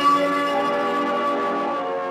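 Bell-like ringing tones, several pitches sounding together and overlapping, slowly fading.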